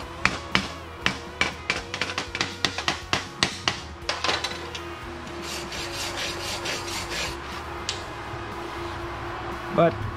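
Chipping hammer striking a flux-core weld bead on quarter-inch steel plate, knocking the slag off in a quick run of sharp metallic taps for about four seconds. Then a steel wire brush scrubs the bead clean.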